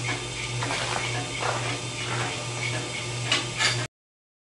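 Large wood lathe running with a big poplar blank turning on it: a steady low hum. A few sharp clicks come near the end, then the sound cuts off abruptly.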